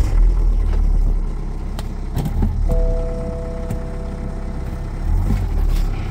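BMW car engine running just after being started, a steady low rumble heard from inside the cabin, louder at the start and again near the end. About three seconds in, a steady two-note electronic chime from the dashboard sounds for about two seconds.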